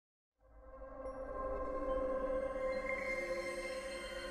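Intro theme music: a chord of steady held tones fades in from silence about half a second in and slowly swells.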